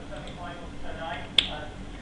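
One sharp click of a computer mouse button about halfway through, over faint low speech.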